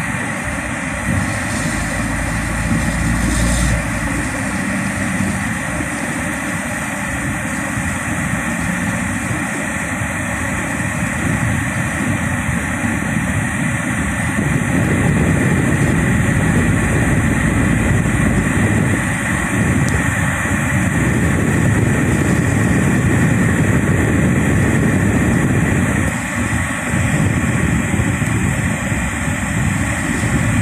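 Car cabin noise while driving on a wet road: steady engine and tyre noise, heard from inside the car. It grows louder about halfway through.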